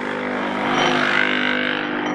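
Capsule espresso machine's pump running with a steady hum and hiss as it brews an espresso shot, coffee streaming from the spout into a glass.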